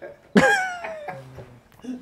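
A man's burst of laughter: one high whoop that starts sharply about a third of a second in and falls in pitch as it trails off over about a second, followed by quieter low chuckling.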